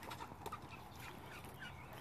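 Faint calls of backyard poultry: a few short, soft notes spaced out over a quiet outdoor background.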